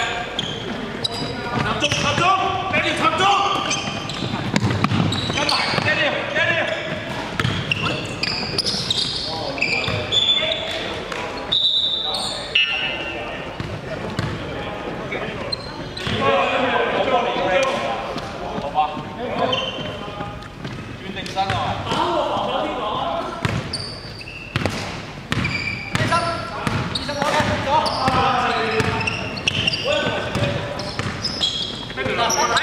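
Indoor basketball game: voices of players and onlookers calling out and talking, with the ball bouncing on the hardwood court, all echoing in a large sports hall.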